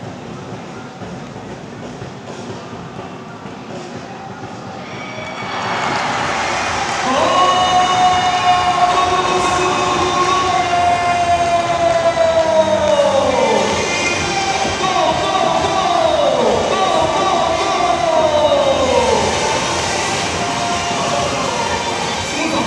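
A football commentator's excited goal call: long, drawn-out shouts held on one pitch, each falling away at the end, with the background noise rising about five seconds in.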